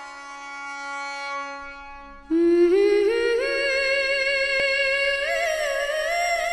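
Devotional song: a soft, held instrumental chord fades out, then a little over two seconds in a voice comes in much louder, humming a melody that climbs in small sliding steps.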